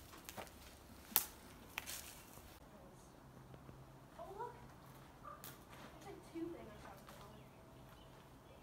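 Quiet handheld movement through an old wooden shed, with three sharp knocks in the first two seconds, then a faint low steady hum with a few brief faint chirps.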